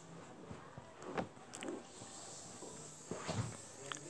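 Quiet background noise with a few faint, soft clicks and knocks, in a pause between stretches of narration.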